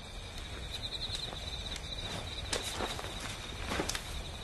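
Quiet night ambience with a steady high insect chirping and a low hum, and a few soft rustles and footfalls about two and a half seconds in and near the end as a man sits down.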